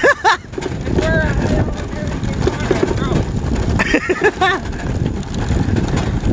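Steady low rumble of wind buffeting the microphone and tyres rolling over bumpy grass as an e-bike rides along, with brief laughter near the end.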